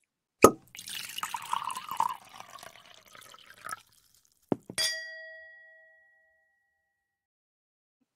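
Intro sound effect: a sharp knock, then about three seconds of liquid being poured into a glass with small clinks, then a glass struck with a clink that rings out as a clear ding and fades over about a second.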